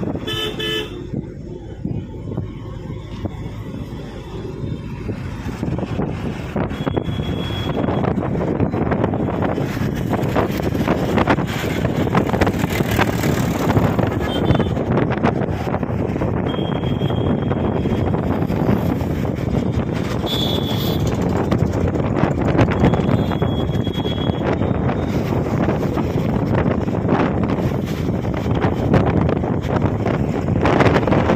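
Steady road-traffic noise with wind on the microphone, broken by about five short, high-pitched horn toots.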